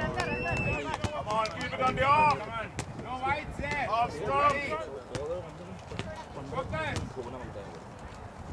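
Several voices of players talking and calling out across the field, indistinct, with a few brief sharp clicks among them.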